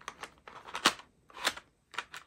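Small plastic diamond-drill bottles clicking and tapping against a plastic storage case as they are picked out of their compartments, with two sharper clicks about a second and a second and a half in.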